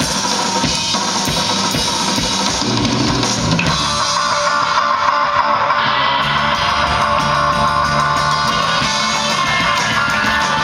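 Live instrumental surf rock from a full band: electric guitars, electric bass and a drum kit playing steadily, heard through the stage PA.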